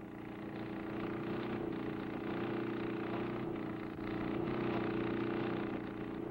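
Air compressor pumping nitromethane through plastic tubing, running with a steady droning hum that swells slightly in the first second.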